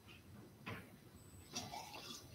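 Near silence: quiet lecture-hall room tone with two faint brief clicks, the first about two-thirds of a second in and the second about a second and a half in.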